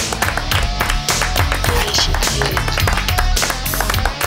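Music: the instrumental intro of a rock-rap song, with a loud, steady drum beat.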